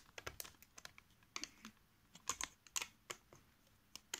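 Plastic Lego bricks being handled: a scatter of faint, sharp, irregular clicks and taps.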